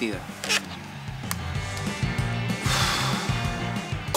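Soft background music score with a couple of faint clicks early on, then a noisy whoosh swelling for about a second near the end as a scene transition.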